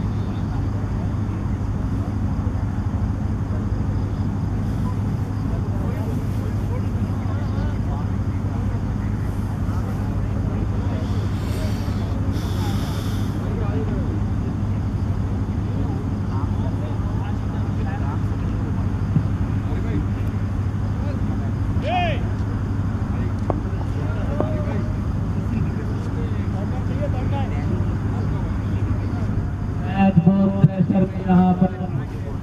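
A steady low hum with faint, distant voices over it, and a brief higher noise about halfway through.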